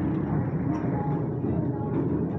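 Steady low rumble of street noise, engines and traffic, with voices in the background.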